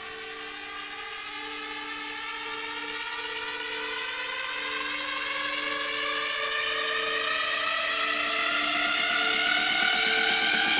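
Electronic dance music in a breakdown: a synth riser sweeps slowly upward in pitch and grows steadily louder over held synth notes, building toward the drop, with the beat starting to come back near the end.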